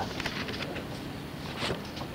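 Background room noise and hiss of an old cassette lecture recording, with a few faint clicks or taps.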